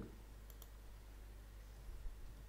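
Two faint computer mouse clicks close together, about half a second in, over a low steady hum.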